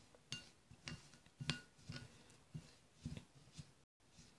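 Metal spoon stirring toasted sesame seeds and honey in a cut-glass bowl: a string of faint, irregular clinks of the spoon against the glass, some ringing briefly.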